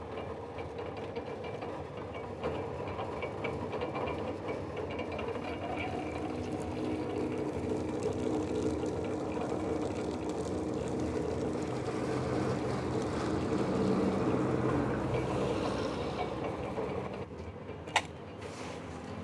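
Motorised sugarcane crusher running steadily, its rollers grinding stalks of cane. It grows a little louder toward the end, then drops off shortly before the end.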